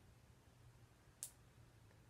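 Near silence with a faint low hum, broken once about a second in by a short, crisp tick as fingers pick at the backing of a paper sticker sheet.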